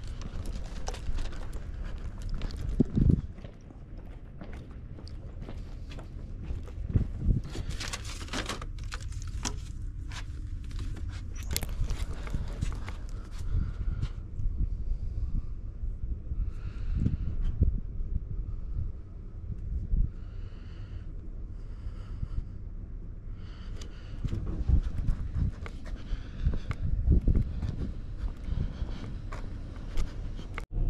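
Footsteps on a concrete walkway, with irregular thuds and knocks from the phone and clothing being handled. Faint short pitched sounds repeat several times about halfway through.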